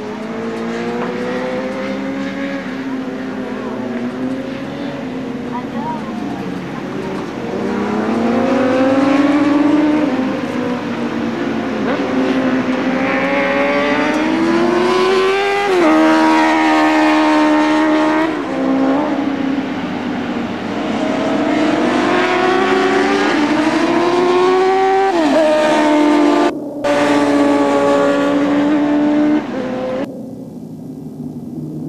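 Several sportbike engines running hard on a road-racing circuit, their pitch climbing under acceleration and dropping sharply at each gear change, with bikes overlapping as they pass. The sound cuts out briefly near the end.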